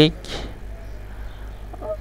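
A pause in the narrator's speech: the end of a spoken word at the start, then a steady low hum and faint room noise, with a short vocal sound near the end.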